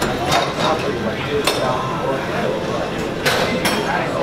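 Gym ambience: metal weights clinking and clanking about four times, sharp and short, over a steady murmur of voices.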